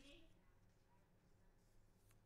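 Near silence: faint steady low hum of room tone.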